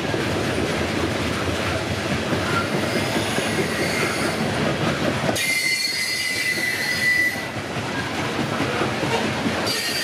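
Steel wheels of Norfolk Southern coal hopper cars rolling steadily over the rail with a continuous rumble and clatter. About five seconds in, a high wheel squeal rings out for about two seconds, and a brief squeal comes again near the end.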